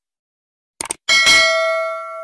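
Subscribe-button end-screen sound effect: a short click just before one second in, then a loud bell ding that rings on and slowly fades.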